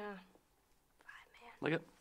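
Speech only: a man's voice trails off, a brief pause, then soft, quiet speech.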